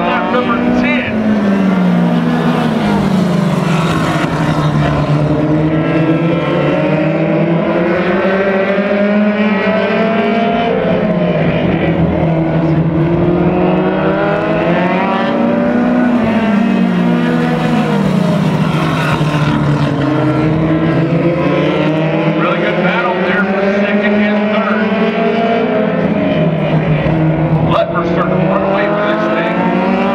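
Three Focus midget race cars lapping an oval, their four-cylinder engines revving up along each straight and dropping off into the turns. The engine note rises and falls in pitch about every seven to eight seconds, with no break.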